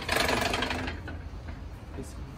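A door being pushed open: a loud rattling scrape lasting under a second, over a steady low hum.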